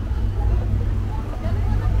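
Pickup truck engine idling close by, a steady low rumble that grows a little louder near the end, with faint voices in the background.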